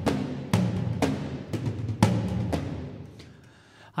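Sampled cinematic percussion toms from a Spitfire library, played back as a run of deep drum hits, roughly two a second, each ringing on. The hits stop about two and a half seconds in and the ringing fades away.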